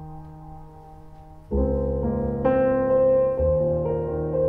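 Piano music played back over home-built loudspeakers (center channel with front left and right speakers and a small subwoofer) and heard in the room. Held notes fade for about a second and a half, then a louder chord with deep bass comes in, followed by two more.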